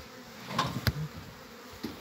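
Honeybees buzzing around an open hive, with a sharp click a little under a second in.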